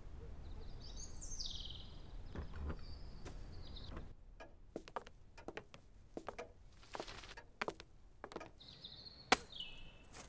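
Animation sound effects: a low rumble with a few high chirps, then, after about four seconds, a string of sharp clicks and knocks, the loudest one near the end.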